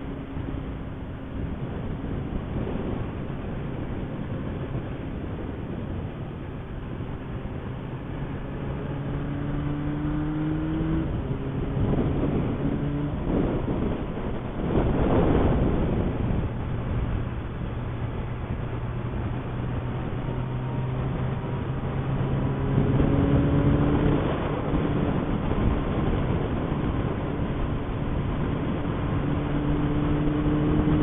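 Motorcycle engine heard from on the bike as it accelerates on the open road, its note climbing, dropping at a gear change about eleven seconds in and then climbing again, over steady wind rush on the microphone. About halfway through a brief louder rush of noise swells and fades.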